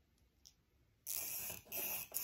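Chalk roller pen drawn along a ruler across fabric, giving two short scratchy strokes from about halfway in.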